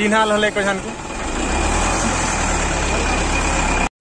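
Brief voices, then a motor vehicle's engine idling, a steady low rumble from about a second in that cuts off suddenly just before the end.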